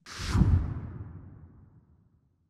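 A whoosh transition sound effect with a deep boom about half a second in, fading away over the next second and a half.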